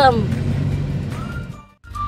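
Low steady hum of a car's engine and road noise heard from inside the cabin, fading out to a brief silence near the end.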